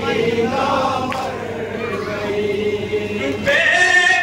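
A group of men chanting a noha, a Shia mourning lament, together in chorus. About three and a half seconds in the singing gets louder and rises in pitch as the next line begins.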